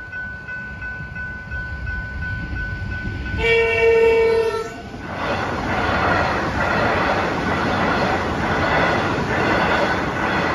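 Level-crossing warning bells ringing in a steady pulsing tone. About three and a half seconds in, an electric suburban train sounds one horn blast of over a second. It then passes over the crossing with a loud rush and clatter of wheels on the rails, the bells still ringing under it.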